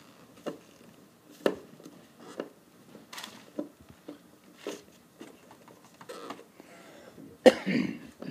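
Tissue-paper wrapping rustling and a plastic carry case knocking as a handheld refrigerant identifier is unwrapped by hand: a string of short rustles and clicks, a couple of seconds apart, with a louder short burst near the end.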